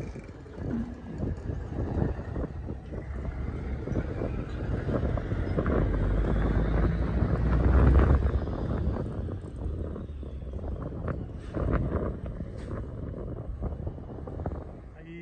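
A motor vehicle's engine rumble that swells to its loudest about eight seconds in and then fades, with wind buffeting the microphone and a few light knocks.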